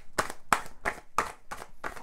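Tarot cards being shuffled by hand: a quick run of sharp card slaps and flicks, several a second.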